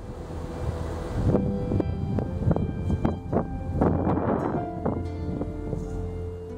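Wind rumbling on the microphone, with soft background music of separate held notes coming in about a second and a half in.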